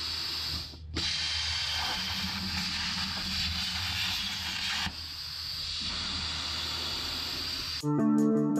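CNC plasma torch cutting sheet steel: a loud, steady hiss of the arc. After a brief break near the start it runs loud until about five seconds in, then drops to a softer hiss.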